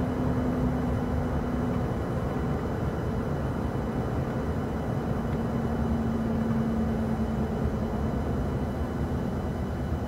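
Steady road noise inside a vehicle's cabin at highway speed: low tyre and engine rumble with a faint steady hum that drops out for a couple of seconds early on.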